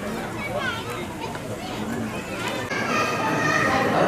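Several people's voices, children's among them, chattering and calling out at once, with a louder, higher voice coming in near the end.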